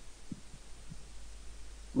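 Pause with a steady low hum in the background and three faint, soft low thumps in the first second.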